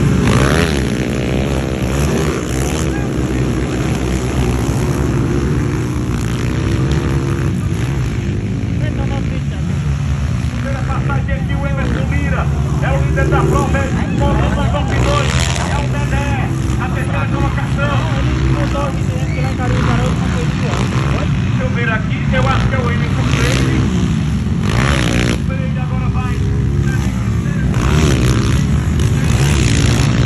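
230cc dirt bike engines racing, revving up and down as the bikes accelerate and pass, with several loud full-throttle bursts in the second half, over a background of voices.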